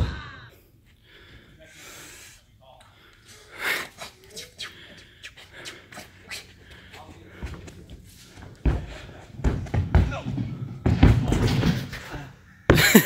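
Thumps of people tricking on a sprung gym floor: one sharp thud right at the start, then a run of dull thuds in the last few seconds. Breathing and indistinct voices are mixed in.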